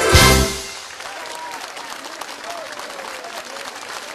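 A live band's song ends on a final hit in the first half-second. Then comes steady audience applause, a crowd clapping with a few voices calling out.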